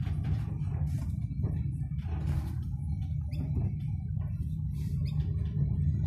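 Car cabin while driving slowly: a steady low engine and road rumble, with scattered light clicks and small squeaks over it.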